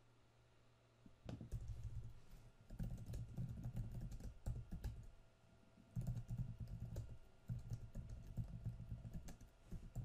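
Typing on a computer keyboard, rapid key clicks in bursts with a dull thud from the desk, starting about a second in and pausing briefly around the middle before resuming.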